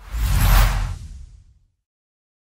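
A whoosh sound effect with a deep rumble underneath. It swells to a peak about half a second in, then fades away by about a second and a half in.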